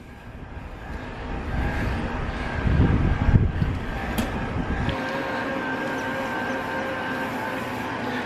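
Electric bike's pedal-assist motor whining on a steady tone while ridden, over wind and road rumble that drops away about five seconds in.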